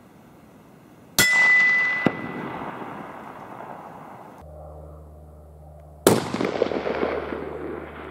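Two rifle shots from a .300 Winchester Magnum, one about a second in and one about six seconds in. Each is a sharp crack followed by a long echo that dies away over a few seconds. A steady low hum sits between them.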